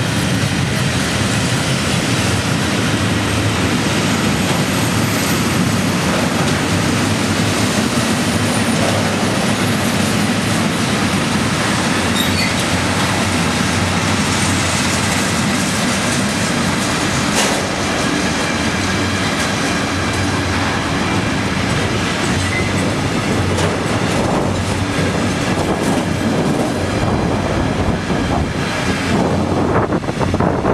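A freight train of covered goods wagons and then gas tank wagons rolling past close by: a steady, loud rumble of steel wheels on rail with wheel clatter, the clicks coming more often in the last few seconds.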